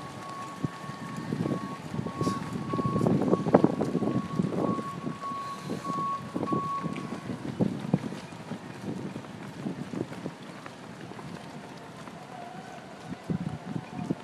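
Runners' footsteps slapping on wet asphalt as a pack passes close by, densest and loudest a few seconds in, with wind on the microphone. A thin, steady high tone comes and goes through the first half.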